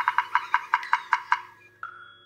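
Woodpecker drumming sound effect: a quick run of wooden taps, about eight a second, that stops about one and a half seconds in, followed by a brief tone near the end.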